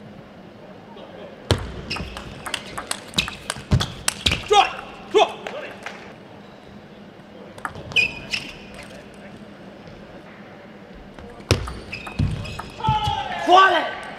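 Table tennis rallies: the celluloid ball clicks quickly off the rackets and the table in a long rally, and a short rally follows later. A player shouts near the end.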